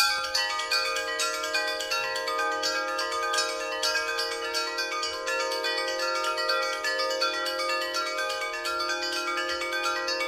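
A hanging cluster of metal chime tubes and glass chimes struck rapidly with wooden sticks by two percussionists. It makes a dense, unbroken flurry of bright, ringing pitched strikes, with the ringing notes sustaining underneath.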